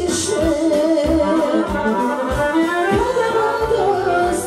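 Live Balkan folk music: a woman singing held, wavering notes into a microphone over piano accordion accompaniment with a steady beat.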